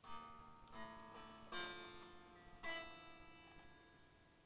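Strings of an unplugged ESP LTD EC-256 solid-body electric guitar strummed four times over about three seconds, each chord left to ring out thinly; the last two strums are the loudest.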